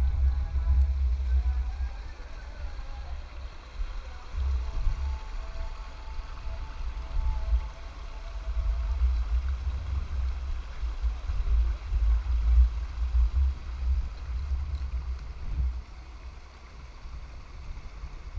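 Wind buffeting the camera's microphone in gusts: a low rumble that swells and drops throughout, with faint, long-held voice tones in the background during the first half.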